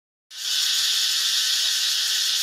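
Steady, high-pitched insect chorus, an even hissing drone, that comes in abruptly a moment after the start.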